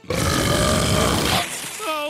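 Cartoon fire-breath sound effect: a loud, rasping belch of flame lasting about a second and a half, then tailing off.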